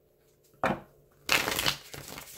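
Tarot cards being shuffled by hand: a brief rustle about half a second in, then a longer one around a second and a half in.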